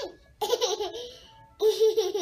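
Toddler laughing in two bursts, the first about half a second in and the second near the end.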